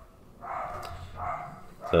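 A dog barking twice in the background, muffled.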